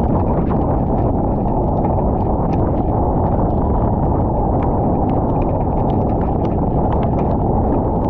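Strong wind buffeting the microphone as a loud, steady, muffled rumble, with irregular small ticks of raindrops striking the camera.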